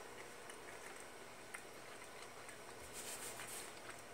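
Faint sounds of a person chewing shrimp: a few soft ticks and a brief hiss about three seconds in.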